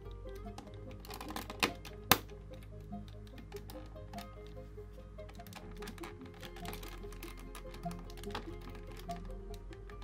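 Background music with small plastic clicks and taps of LEGO pieces being handled and pressed onto a model. The loudest are two sharp clicks about two seconds in.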